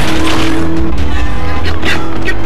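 Film sound effects of a car driving fast with its tyres skidding, mixed over a music score.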